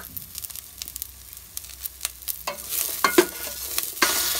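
Broccoli florets sautéing in a stainless-steel pot, stirred with a spoon: scraping and knocking strokes against the pot, busier in the second half.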